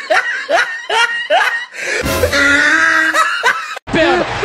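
A person laughing in a quick run of short high rising 'hee' sounds, about three a second; about halfway through, music takes over and cuts off abruptly just before the end.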